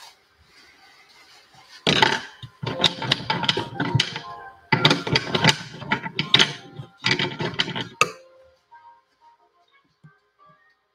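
Small hard objects clattering and rattling as they are rummaged through by hand, in four dense bursts over about six seconds, ending with one sharp click.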